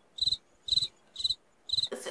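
Cricket chirping steadily, about two chirps a second, each chirp a short trill of a few quick pulses.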